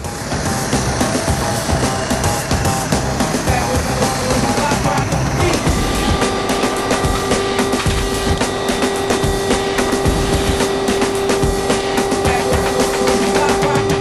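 Loud, steady aircraft engine noise from a C-2 Greyhound's turboprops while it waits on the ramp, with a steady hum setting in about six seconds in.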